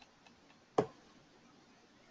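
Computer mouse being used: a few faint scroll-wheel ticks, then one sharper click a little under a second in.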